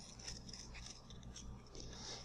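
Soil knife scraping across the end of a soft soil specimen as it is trimmed, a series of faint, short, crumbly cutting strokes.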